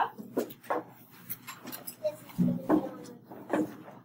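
A classroom of children standing their folders up: a scatter of knocks, rustles and rubbing of card and paper, with a brief voice partway through.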